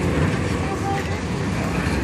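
Steady city street traffic noise, a continuous low rumble of passing vehicles, with faint voices in the background.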